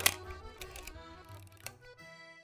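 Two sharp mechanical clicks from a Pentax K1000 35mm film SLR as it is wound on and fired: one right at the start and one near the end. Background music with sustained tones plays underneath.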